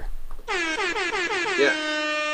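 A horn-like sound effect played to introduce a trivia question: a buzzy pitched tone that warbles rapidly, about eight wobbles a second, then settles into one steady held note.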